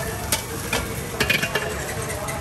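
Steel ladle and spatula scraping and clinking against a wok as egg fried rice is stirred, over a steady frying sizzle. There are a few sharp metal clinks, with a quick cluster of them a little past one second in.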